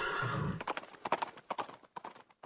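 Horse hooves clip-clopping: a quick run of hoof beats starting about half a second in and fading away.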